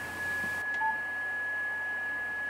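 Steady high-pitched electronic whine over faint hiss, with one short soft beep just under a second in.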